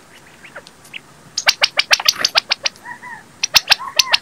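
Birds calling: a quick run of sharp chip notes starts about a second and a half in. A couple of soft arched calls follow around three seconds, then more sharp chips near the end.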